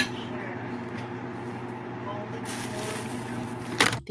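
Steady low hum of kitchen room sound from a phone recording, with a high hiss coming in after about two and a half seconds. There is a sharp click at the start and another just before the end.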